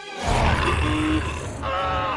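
Cartoon sound effects over music: a loud rumbling rush starts about a quarter second in, and near the end a pitched, wavering cry like a startled shriek.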